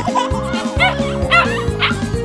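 Instrumental children's music with a cartoon puppy yipping several short times over it.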